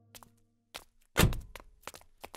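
A single heavy, deep thud about a second in, with a few lighter clicks around it, over a low sustained music note that fades out.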